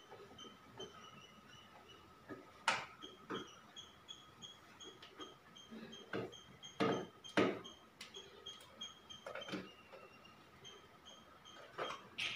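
Irregular clicks and knocks of hands and a screwdriver working wires and breakers in an open consumer unit, the loudest about seven seconds in. Under them runs a faint high chirping of short pips, about three a second.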